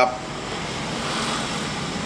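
Steady background hum of machinery or traffic, swelling slightly about halfway through.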